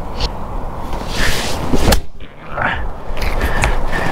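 A golf iron (an 8 iron) striking the ball off the fairway turf: one sharp click about two seconds in, over a steady rumble of wind on the microphone.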